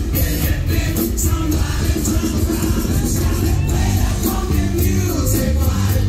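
Loud amplified concert music with a heavy bass line and a regular drum beat, recorded from within the audience.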